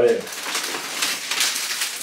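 Plastic bags rustling and crinkling as they are handled: a bag of produce is pulled out of a shopping bag.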